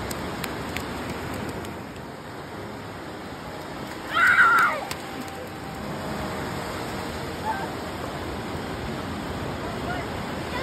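Ocean surf washing in over the shallows, a steady rush, with a child's brief high squeal about four seconds in.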